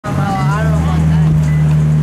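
A vehicle engine running at a steady low pitch, stepping up slightly in pitch about half a second in. Voices talk over it early on.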